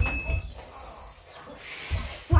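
A knock, then a short, high electronic beep lasting about half a second, and a soft hiss near the end.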